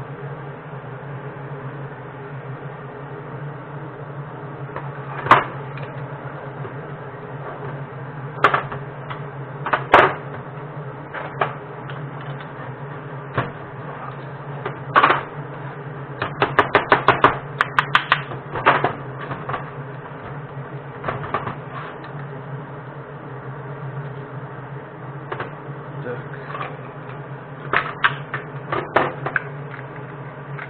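Scattered metal clacks and knocks from metal lead-casting molds being handled on a workbench, with a quick run of rattling clicks around the middle and a few more near the end. A steady low hum runs underneath.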